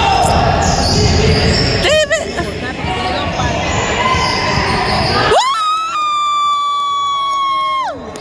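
Gym scoreboard horn sounding for about two and a half seconds: it rises quickly in pitch, holds one steady tone and cuts off suddenly. Before it come a basketball bouncing on a hardwood floor, squeaking sneakers and a murmur of spectators.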